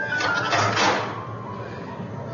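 Postcards pushed through a metal letterbox flap in a wooden door: a sliding, rustling scrape of card against the flap that swells to its loudest about a second in, then fades.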